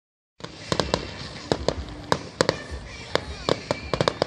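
Aerial fireworks shells bursting overhead: an irregular run of sharp bangs, some in quick pairs, starting about half a second in.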